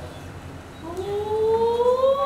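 A single long pitched note, quiet at first, that slides slowly upward for about a second and a half and then begins to fall away, over a low steady hum.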